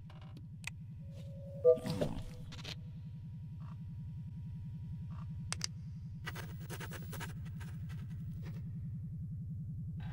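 Animated film sound effects: a steady low electrical hum of a spaceship interior, with a short beep about two seconds in and scattered clicks, most of them in the second half, as toggle switches on a control panel are flicked.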